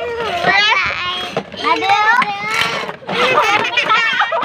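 High-pitched voices of children and young women talking and calling out excitedly, with pitch swinging up and down throughout.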